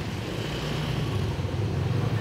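A steady low rumble with a hum under a haze of noise.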